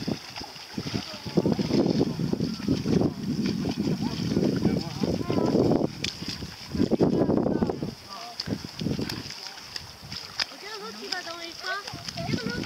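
Wind buffeting the microphone in irregular gusts, with faint voices near the end.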